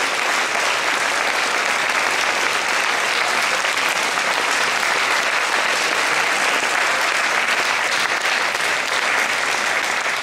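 Concert audience applauding steadily.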